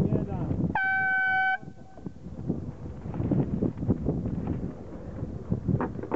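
An air horn sounds one short, steady blast about a second in, lasting under a second; at a sailing race this is a signal in the starting sequence. Voices talk before and after it.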